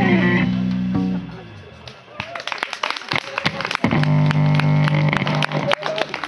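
Electric guitar and bass band ending a song: a held final chord dies away, then scattered hand clapping, with a low guitar note ringing out again briefly partway through.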